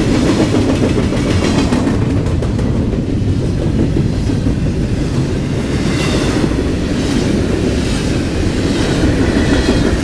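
CSX double-stack container train of well cars rolling past at close range: a loud, steady rumble of steel wheels on the rails with clickety-clack as the wheel sets pass. A brighter, higher rushing sound swells a few times in the second half.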